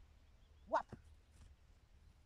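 A woman's single short spoken command, rising in pitch, about a second in, over a low steady rumble of wind on the microphone.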